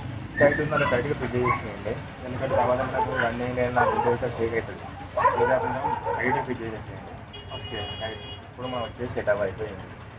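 A person talking (words not transcribed) over a steady low background hum. Near the end there is a brief steady high-pitched tone.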